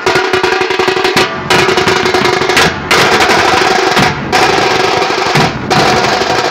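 Street drum band of big bass drums and slung side drums, beaten with sticks in a loud, fast, continuous roll with a few short breaks.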